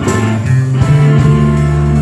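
Live rock band playing loud, with electric guitar to the fore over bass and drums.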